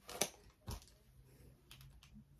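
Light clicks and taps from handling a makeup brush and eyeshadow palette: a sharp click just after the start, a duller tap with a low thud soon after, and a couple of faint clicks near the end.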